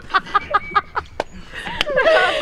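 A young woman laughing in quick bursts, about six a second, dying away after about a second, followed by two short clicks.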